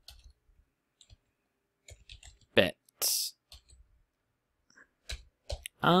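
Scattered keystrokes on a computer keyboard, typed in short runs of a few clicks at a time.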